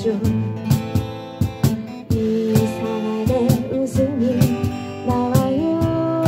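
Slow acoustic song played live: steel-string acoustic guitar strummed, with regular cajon hits and a sung melody line over them.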